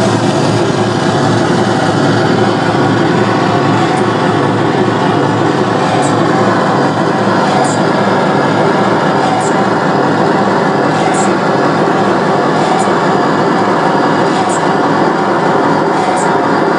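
Live harsh noise: a loud, dense, unbroken wall of distorted electronic noise. From about four seconds in, a brief high chirp recurs every one and a half to two seconds.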